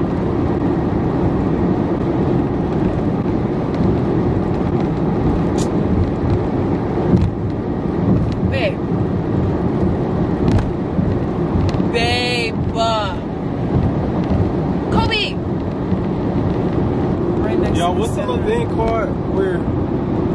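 Steady road and engine rumble heard from inside the cabin of a moving car, with a few short bits of voice breaking in about halfway through.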